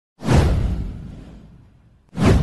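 A whoosh sound effect with a deep rumble under it, swelling fast about a quarter second in and then fading away over a second and a half.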